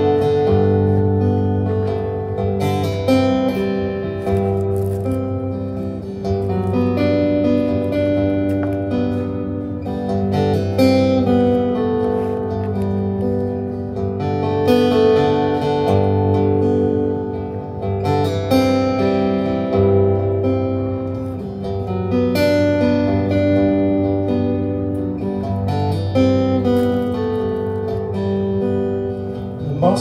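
Solo acoustic guitar playing the instrumental introduction of a folk song, with ringing strummed chords that change every few seconds.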